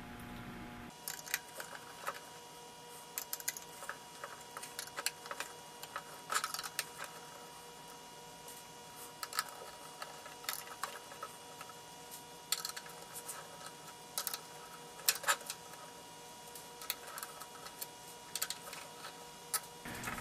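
Faint, irregular small metallic clicks and ticks of a screwdriver backing small Phillips screws out of the metal back panel of a Metric Halo ULN-2 interface, with loosened screws and tools handled on the bench. A faint steady hum sits underneath from about a second in.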